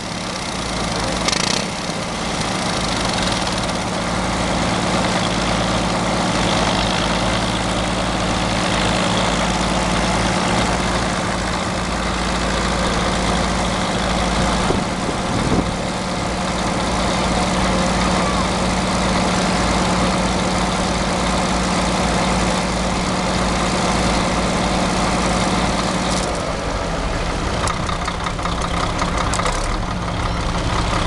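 Caterpillar D6 crawler tractor's diesel engine running steadily at idle; its note changes near the end.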